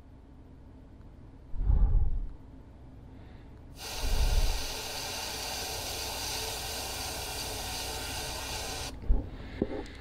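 Iwata Eclipse HP-CS gravity-feed airbrush spraying transparent black paint through a tape mask: one steady hiss of about five seconds, starting about four seconds in and cutting off sharply near the end. Before it come two low thumps.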